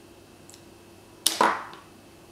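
A small hard plastic makeup case clacking: a faint tick, then two sharp clicks a fraction of a second apart, the second followed by a brief rushing tail.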